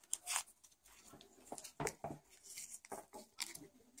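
Paper tape being peeled off and wrapped by hand around the end of a craft wire: quiet, scattered crinkles and rustles, with two louder ones near the start and just before two seconds in.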